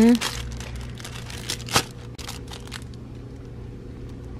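Plastic-wrapped toy packages crinkling and rustling as they are handled, with one sharper click about two seconds in, over a low steady hum.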